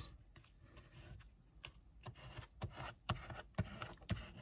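A plastic card scraped over a glued Tyvek strip on a kraft file folder to smooth it down and spread the glue to the edges: faint short rubbing strokes that come faster and a little louder after about two and a half seconds.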